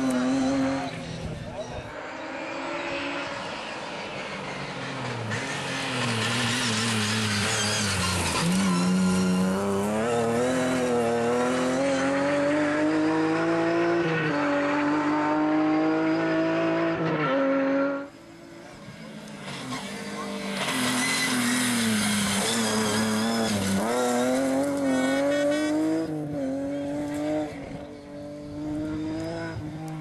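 Rally car engine revving hard, its pitch climbing and dropping back again and again as it changes gear. About two-thirds of the way through, the sound drops away suddenly, then the engine builds up again.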